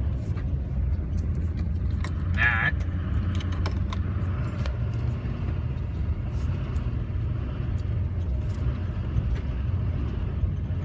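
Chevrolet one-ton diesel dually truck running at low speed over a bumpy dirt road, heard from inside the cab as a steady low rumble with many light rattles and clicks.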